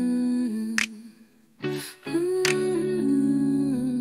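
Intro of an AI-generated song: a female voice humming long, wordless held notes that step from one pitch to the next, over guitar with a few sharp plucked attacks. The music drops out briefly about a second and a half in, then the hum comes back on a higher note.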